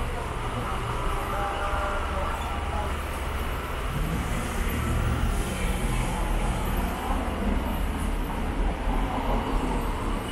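Steady city street ambience: a continuous low traffic rumble with faint voices mixed in.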